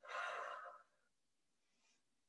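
A woman's single audible breath through the mouth, a little under a second long, taken with the effort of a straight-leg-lift ab exercise.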